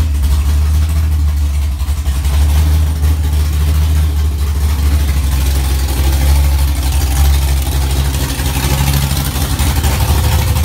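Chevrolet Corvette C6 Z06's 7.0-litre LS7 V8, fitted with A.I. 280cc heads and a Lethal Z cam, idling steadily just after start-up with a deep, loud exhaust note.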